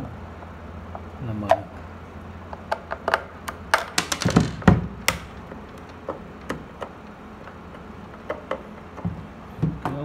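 A two-prong screwdriver clicking and scraping in the screws of a plastic electric kettle base as they are undone, with sharp knocks from the plastic body being handled. The clicks come in a dense cluster about three to five seconds in, then scattered.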